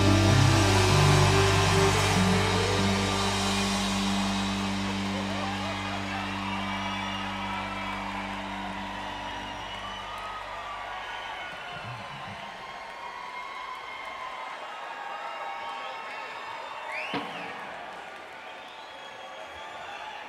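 A rock band's final sustained chord rings out and fades away, ending about ten seconds in, over an audience cheering and whooping. After the chord dies, the cheering and scattered whoops carry on, with one loud whoop near the end.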